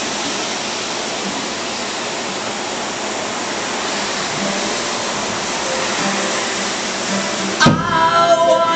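Steady hiss of rain falling. Near the end a live band comes in with a sharp hit and strummed acoustic and electric guitars.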